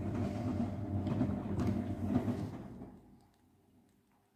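Castor CX342 front-loading washing machine in its 70° main wash: the drum motor hums steadily as the wet laundry tumbles. The drum stops about three seconds in, and the sound dies away to near silence.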